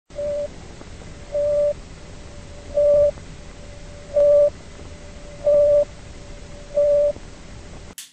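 Sputnik satellite radio beeps from a modified recording: six short beeps at one steady pitch, about one and a half seconds apart, over steady radio hiss that cuts off suddenly.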